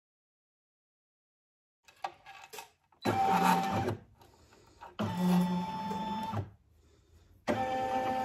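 Embroidery machine motor whirring in three short bursts of about a second each, with a steady whine.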